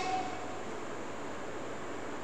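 Steady background hiss of room tone and recording noise in a pause between a woman's spoken phrases.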